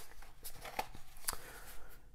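A folded paper insert being handled and folded shut: faint rustling of paper with a few light ticks and taps.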